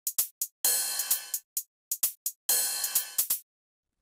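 Drum-machine hi-hat and cymbal pattern: short, crisp ticks with two longer, ringing open hits about two seconds apart, all bright and high-pitched.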